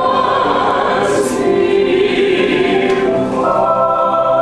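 An ensemble of opera singers singing together with piano accompaniment, a full chord of several voices held and moving to a new sustained chord near the end.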